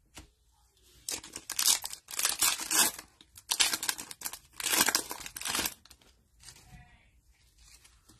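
Foil wrapper of a 2022 Optic football card pack being torn open and crinkled by gloved hands, in a run of crackly bursts over about five seconds, then only faint rustling of the cards being handled.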